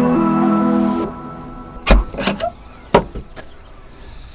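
Background music that stops about a second in, followed by a few sharp knocks and thumps of fishing gear being handled and loaded into a car boot.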